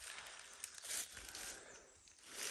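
Faint rustling of footsteps through dry leaf litter and ivy undergrowth, a little louder about a second in.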